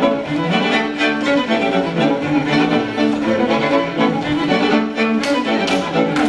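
Instrumental folk dance music from a folk band, with fiddles leading over bowed strings and bass in a steady, lively beat.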